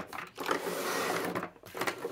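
A handful of fountain pens being slid and spread out across a tabletop by hand: a second-long sliding rustle with a few light clicks of the pen barrels knocking together.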